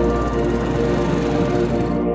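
Small motorcycle engines running and passing by, mixed under steady background music; the engine sound stops at the end.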